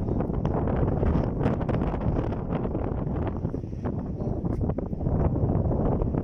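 Wind buffeting the microphone: a steady low rumble that eases a little in the middle and picks up again near the end.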